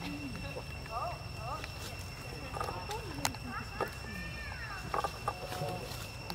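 Macaques calling softly: short rising-and-falling squeaks and chirps at irregular intervals, with one longer falling call about four seconds in, over a steady high-pitched whine.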